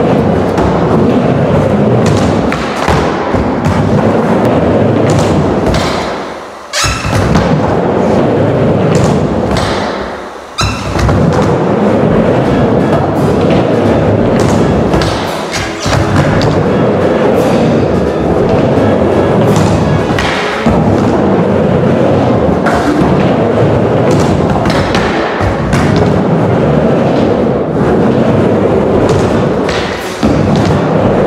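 Background music over a skateboard session: the board's wheels rolling on a wooden ramp and repeated thuds as tricks are landed on a small bank.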